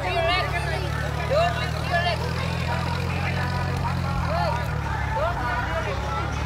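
Children's voices, short rising-and-falling calls and chatter every second or so, over a steady low engine hum.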